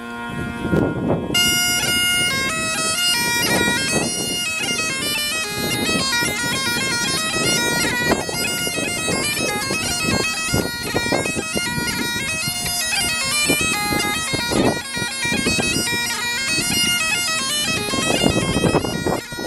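Great Highland bagpipe playing a tune: the steady drones sound under a quick, ornamented chanter melody that comes in about a second in.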